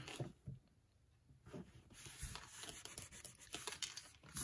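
Faint rustling and rubbing of hands smoothing paper panels flat onto a handmade journal. It is near silent for about the first second and a half, then comes in soft, irregular rubs and light ticks.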